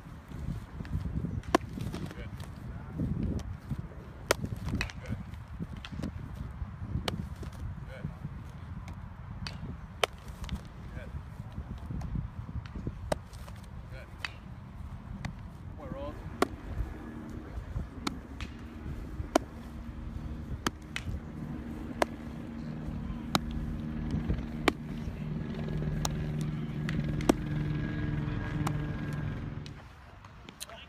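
Baseballs smacking into leather gloves again and again, about one sharp pop every second or so, during a catch-and-throw drill, over a low rumble. A steady low hum joins in about halfway through.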